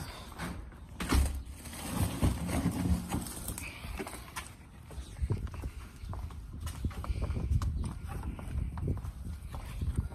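Footsteps on a concrete walkway, a series of short knocks, with a louder thump about a second in.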